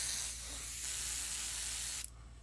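Iwata Micron airbrush spraying white paint, a steady air hiss that cuts off at the end.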